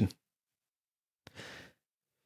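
Mostly dead silence, broken about a second and a half in by one short, soft breath from a speaker.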